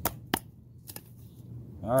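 A small stick knocking on the spine of a small cleaver-style knife, driving it into wood: two sharp knocks in quick succession, then a fainter one about a second in.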